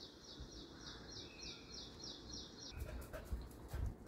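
A bird chirping in a steady rhythm, about three short high calls a second, that stop a little before three seconds in. Low thumps and clicks follow near the end.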